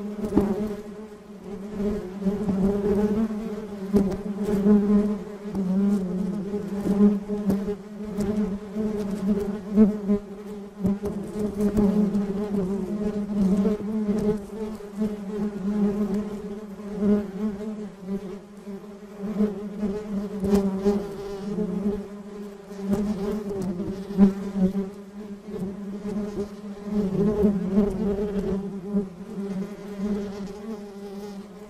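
Honeybee colony buzzing: many bees humming together in a steady low drone that swells and fades, with occasional brief ticks.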